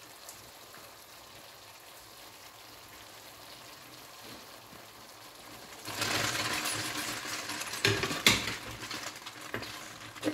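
Low, even sizzle from the pot of tuna and tomato sauce. About six seconds in, a much louder noisy stirring-and-sizzling starts as the spaghetti is mixed in, with two sharp knocks close together near eight seconds.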